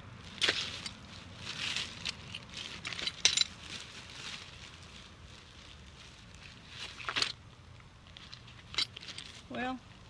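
Plastic bags and packaging rustling and crinkling, with small hard items clattering, in irregular short bursts as things are picked up and set down in a pile of finds.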